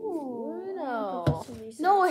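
A child's drawn-out, wordless exclamation, its pitch wavering and sliding up and down, with a single knock about a second in.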